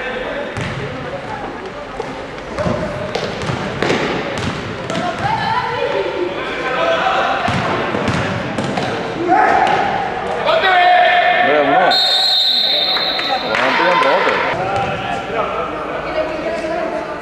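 Basketball dribbled and bouncing on an indoor court, with players and bench shouting in an echoing sports hall. About twelve seconds in, a referee's whistle blows for a second and a half, stopping play for a foul that leads to free throws.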